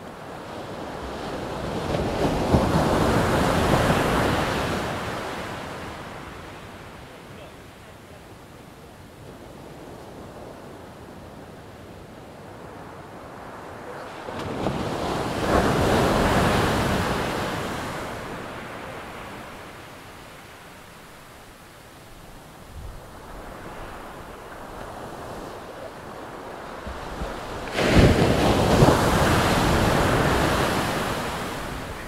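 Ocean waves breaking on a shore: three surges about twelve seconds apart, each swelling up and fading away as the water washes back. The second and third come in suddenly.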